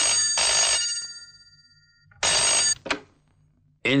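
Desk telephone ringing twice, the second ring cut short, then a short click as the receiver is picked up.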